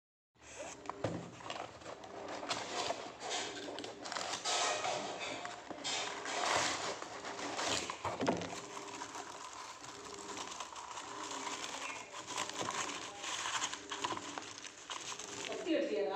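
Cardboard mailer box being opened by hand and its kraft-paper packing rustled and crinkled, with many irregular crackles and rips.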